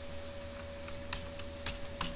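Computer keyboard being typed on: a handful of separate keystrokes, the loudest a little past a second in, over a faint steady hum.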